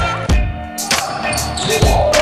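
Music track with a steady beat: low kick-drum thumps and sharp hi-hat ticks under a sustained melody line; the high percussion thins out briefly about halfway through.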